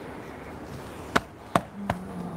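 Three sharp hand slaps on a man's body, coming about a second in and then in quick succession, roughly a third of a second apart.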